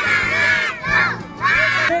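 A group of young children shouting together, loud and high, in three bursts: their answer to a call to shout "semangat".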